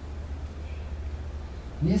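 A pause in a man's spoken lecture with a steady low hum underneath, then his voice resumes near the end.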